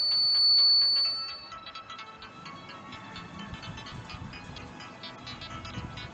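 Homemade gate alarm's DC buzzer sounding one steady high-pitched tone that cuts off about one and a half seconds in, leaving quiet background music with a steady beat.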